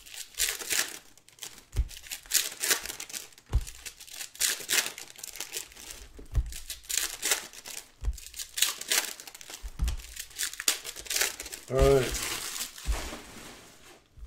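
Foil trading-card pack wrappers crinkling and tearing as packs are handled and ripped open, in a fast run of short rustling strokes. A brief voiced sound breaks in about twelve seconds in.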